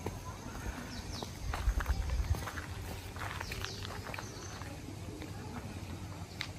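Footsteps of a person in sandals walking away, a loose series of light steps, with a low rumble on the microphone about a second and a half in.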